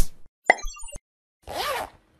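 Short cartoon-style sound effects for an animated logo: a quick swish at the start, a sharp pop about half a second in trailed by a few tiny high blips, and a short swoosh with a pitch that rises and falls near the end.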